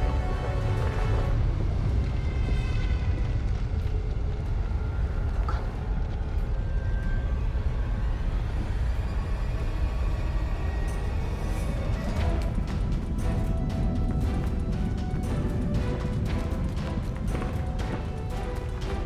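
Film score music over a steady deep rumble of a volcanic eruption sound effect. About twelve seconds in, a run of sharp clicks joins it.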